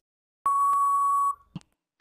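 Quiz countdown-timer sound effect: a single steady electronic beep lasting about a second as the countdown runs out, followed shortly by a brief click.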